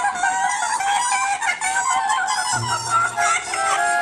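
Cartoon background music with a warbling, chicken-like bird call over it; low bass notes join about two and a half seconds in.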